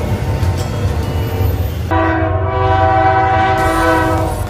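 Freight train running past with a steady low rumble. About two seconds in, a diesel locomotive's multi-chime air horn sounds one long, steady chord lasting about two seconds.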